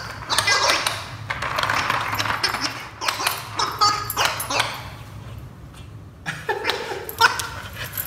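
Wobble Wag Giggle dog ball's gravity-operated giggle noisemakers sounding in uneven bursts as a dog noses and rolls it along, mixed with the dog's own excited yips and whines.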